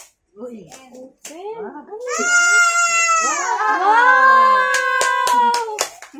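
Small children shrieking and squealing with excitement, two high voices overlapping in long wordless cries that bend in pitch. A few sharp claps or clicks come near the end.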